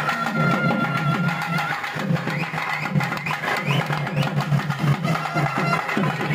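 Festival drumming on double-headed barrel drums, a fast, unbroken beat, with a held high note near the start and short rising high notes over it.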